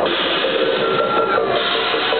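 Loud live techno played over a club sound system, a dense wash of sound with a couple of short held synth tones about midway.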